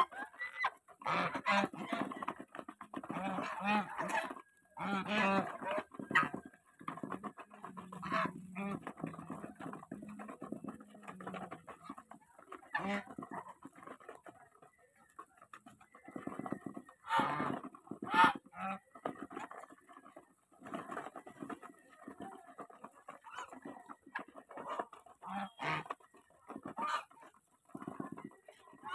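A flock of domestic geese feeding together from a basin of grain: bills pecking and dabbling in the feed with quick clicks, mixed with scattered short honks and calls. A louder burst of calls comes a little past the middle.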